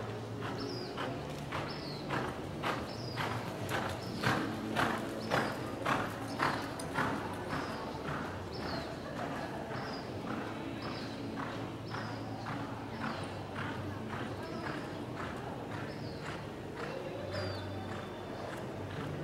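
Hoofbeats of a horse loping on soft arena dirt, an even rhythm of about two strides a second, loudest a few seconds in.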